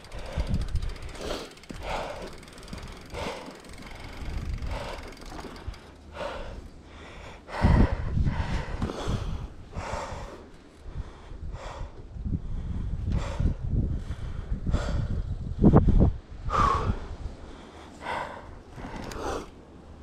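A mountain-bike rider breathing hard, out of breath from a fast trail run, with a heavy breath roughly every second. Bursts of low rumble on the microphone come about eight seconds in and again from about twelve to sixteen seconds.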